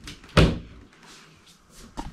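A mains plug pushed into a wall outlet: one sharp, loud clack about half a second in, with a fainter click near the end.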